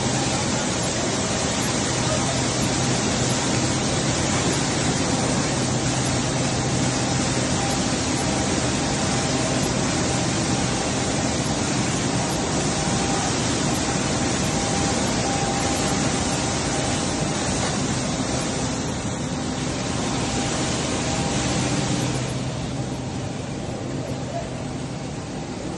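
Soybean processing machinery running steadily: a loud continuous mechanical noise with a low electric-motor hum, growing quieter about two seconds before the end.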